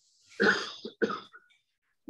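A man clearing his throat with two short, rough coughs in the first second and a half.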